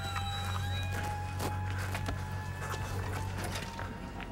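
Background music of held, level tones over a steady low hum, with a few faint clicks.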